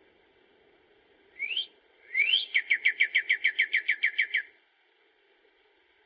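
A songbird singing: a short rising whistle, then a second rising whistle that runs straight into a quick trill of about a dozen falling notes, around seven a second, lasting about two seconds.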